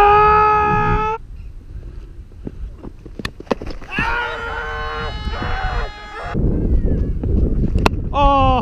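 Two long drawn-out shouts from cricketers, each rising then held: one at the start, lasting about a second, and another about four seconds in, lasting some two seconds. A few sharp knocks fall between them.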